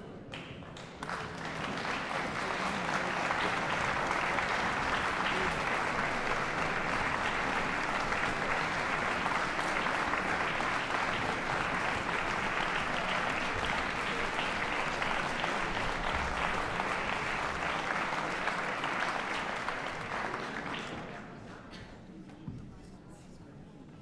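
Audience applauding in a concert hall. The applause swells about a second in, holds steady, then dies away near the end.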